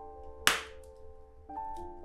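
A raw egg being cracked open: one sharp crack about half a second in, over soft background music.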